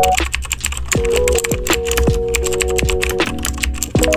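Computer-keyboard typing sound effect, a rapid run of key clicks, laid over background music with sustained keyboard notes and a bass beat.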